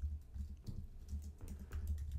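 Computer keyboard typing: a quiet string of light keystrokes over a faint low hum.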